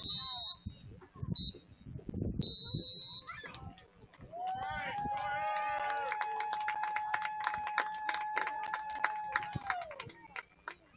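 Referee's whistle blown three times, the last blast longest, then a single long, steady horn for about five seconds that sags in pitch as it stops, over sharp claps and the shouts of players and spectators.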